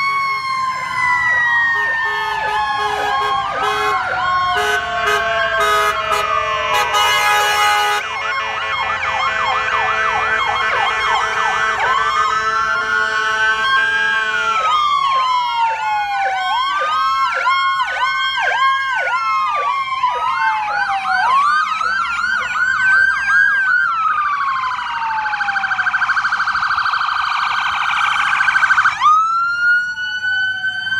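Sirens of a passing fire engine and ambulance sounding together, overlapping and switching between slow rising-and-falling wails and fast yelps. Near the end a rapid warble cuts off suddenly and a wail begins again.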